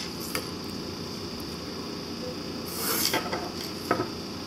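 HB pencil drawn along a clear plastic ruler on paper, ruling a grid line: a short scrape about three seconds in, followed by a light click near the end.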